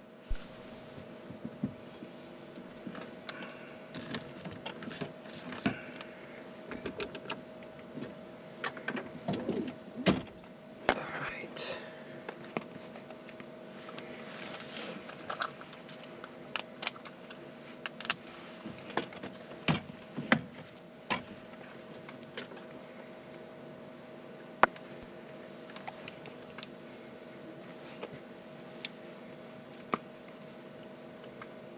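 Steady hum in the cockpit of a Pilatus PC-24 parked with its engines not yet started, over scattered clicks, knocks and rustles as the crew handle switches, seat belts, headsets and sunglasses.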